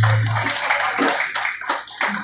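A small audience clapping unevenly at the end of a bluegrass band's song, while the band's last low note dies away in the first half second.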